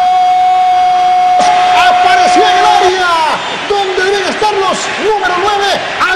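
Spanish-language football commentator's drawn-out goal shout, one long 'goool' held on a single pitch for about three seconds, then excited shouting, over stadium crowd noise.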